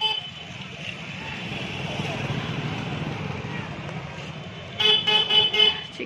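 Busy street-market background of traffic and crowd noise, then a vehicle horn honking a quick run of short toots at one steady pitch near the end, the loudest sound.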